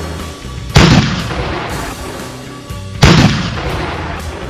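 Two loud gunshot-like booms about two seconds apart, the first about a second in and the second about three seconds in, each dying away over a second or so. Steady background music plays beneath them.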